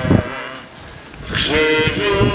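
A group of people singing a slow hymn together: one line ends just after the start, there is a short pause of about a second, and the next line begins about a second and a half in.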